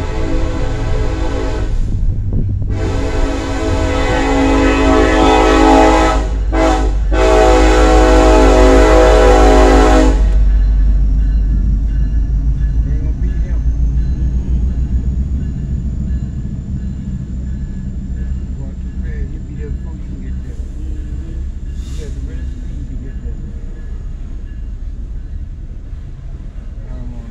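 Locomotive air horn sounding a train-crossing signal: long blasts, then a short one, then a final long one that cuts off about ten seconds in. The deep rumble of the passing train goes on under it and after it, slowly fading.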